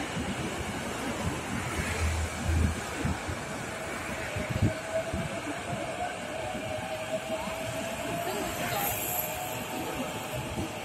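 Orange-striped JR Chūō Line rapid electric train (E233 series) running along its track, with a steady rumble and a faint motor whine that rises slightly in pitch through the second half.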